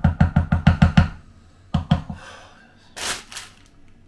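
A rapid run of drum hits, about eight a second, lasting about a second, followed by two more hits just before the two-second mark. A short breathy hiss comes about three seconds in.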